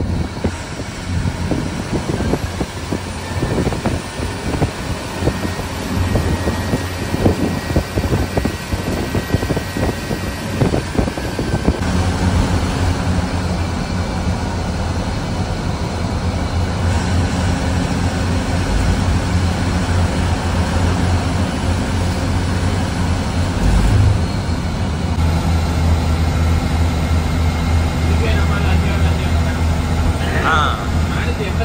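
A bus's engine and road noise heard from inside the cab at highway speed. Irregular low knocks and rattles come through the first ten seconds or so, then about twelve seconds in a steady low drone takes over.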